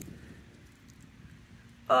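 Quiet outdoor background with only a faint low rumble. A woman's voice starts up near the end.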